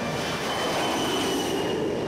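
F-14 Tomcat fighter launched by the carrier's catapult: a steady rush of jet engine noise at full power, with a thin high squealing tone over most of it as the aircraft races down the deck.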